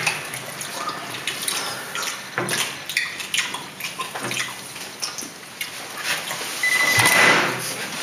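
Scattered small clicks and rustles of objects handled on a glass tabletop, with a short steady high tone near the end.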